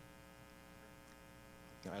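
Faint steady electrical buzzing hum from the hall's microphone and sound system.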